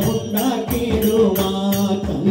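A Malayalam Hindu devotional bhajan sung by a group to a sustained drone, with tabla and a metallic jingling percussion keeping a steady beat about three strokes a second.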